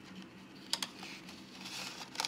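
Paper banknotes and a clear vinyl binder envelope being handled as a bill is slid in, with two sharp clicks close together about three-quarters of a second in and a soft rustle near the end.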